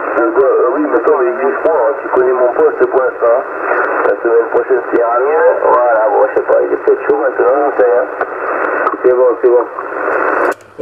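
Another station's voice coming through a 27 MHz CB transceiver in upper sideband (SSB): continuous, narrow, band-limited speech with a faint steady hum underneath. The clarifier is being trimmed as it plays, to bring the sideband voice back to a natural pitch.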